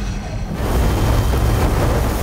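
Cinematic magic-power sound effect: a loud, deep rumbling surge that swells about half a second in and keeps going, like an eruption of energy.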